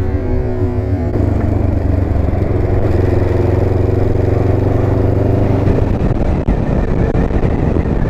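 Motorcycle engine running steadily while under way. About six seconds in, the steady engine note gives way to rougher, uneven noise.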